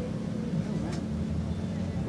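Steady low mechanical hum with faint voices in the background.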